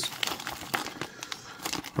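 Clear plastic zip-lock bag of electronic components crinkling in the hands as it is handled and pulled open, a run of small sharp crackles and clicks.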